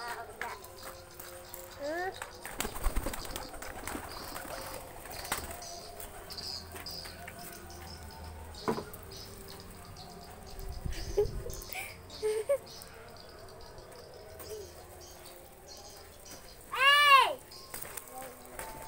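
Domestic pigeons flapping and fluttering their wings and shuffling about on gravel, with scattered small clicks and faint bird sounds. About a second before the end a high-pitched voice calls out once, loudly and briefly, rising then falling in pitch.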